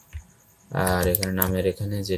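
A man talking, with a few light computer keyboard clicks.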